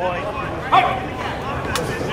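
Ballplayers' voices calling out from the dugout over general ballpark chatter, with one short shout about a second in. A single sharp click comes near the end.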